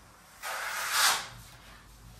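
A long finishing blade drawn across wet joint compound on plasterboard: one scraping swish lasting about a second and loudest near its end.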